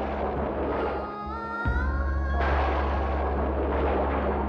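Dramatic TV-serial background score: a sustained low drone with two crashing noise swells, one dying away about a second in and another rising about two and a half seconds in, with held tones gliding upward between them.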